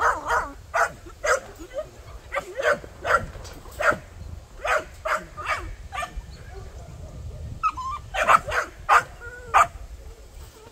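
Puppies yipping and barking in short, sharp calls at an irregular pace, with a lull partway through and a brief whine just before the calls pick up again.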